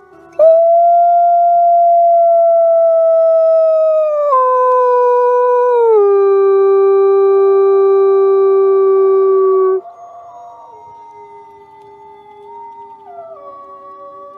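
A wolf howling: one long, loud howl that drops in pitch in two steps and ends about ten seconds in, followed by fainter howling at shifting pitches.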